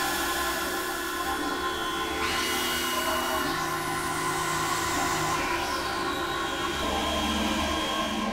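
Experimental electronic drone music: several sustained synthesizer tones are held together over a continuous noisy wash. Some of the held tones change pitch about two seconds in, and the lower ones shift again near the end.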